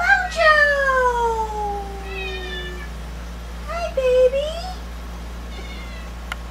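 A cat meowing: one long drawn-out meow sliding down in pitch, then a shorter meow about four seconds in that dips and rises at the end.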